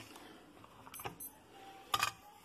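Faint handling of a small plastic portable radio as its back cover is lifted off, with small clicks and a sharper click near the end. A few faint, short, high-pitched beeps come about a second in.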